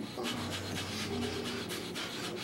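Breath of fire, the Kundalini yoga breathing exercise: rapid, forceful breaths pumped through the nose from the navel by several people at once, in an even rhythm of several breaths a second.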